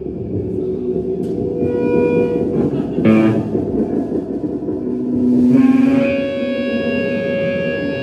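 Live band playing loud electric guitar and bass through amplifiers, with drums, the guitar holding long sustained tones. A sharp hit lands about three seconds in.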